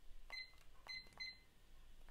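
Three short, faint beeps from the buttons of a digital timer being set, the second and third close together.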